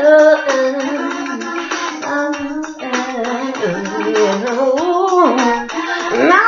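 A woman singing drawn-out, sliding wordless notes over a rhythmic backing track with a steady beat, in a low-fidelity recording.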